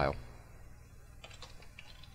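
Computer keyboard being typed: a quick run of faint keystroke clicks starting just over a second in.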